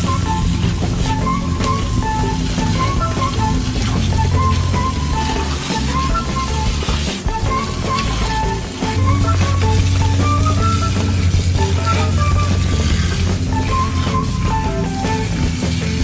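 Background music: an instrumental track with a short melody repeating over a steady bass line.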